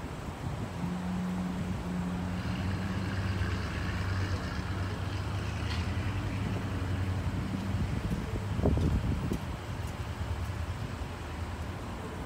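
A vehicle engine humming steadily, fading out about eight seconds in. A brief low rumble follows, the loudest moment.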